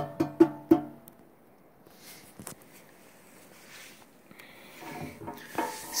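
Hand knocking on the heavy sheet-metal body of a bullet box target: four quick knocks that ring briefly in the first second, then quiet handling with a single click midway.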